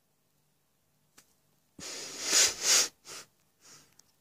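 A person breathing hard through the nose close to the microphone. One long noisy breath about two seconds in swells twice, then two short sniffs follow.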